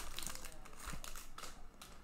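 Clear plastic wrapper of a hockey card pack crinkling as it is pulled off by hand. The crinkling dies down into a few faint rustles and light ticks as the cards are handled.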